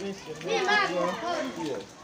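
People's voices speaking, with one high-pitched voice raised loudest about half a second in.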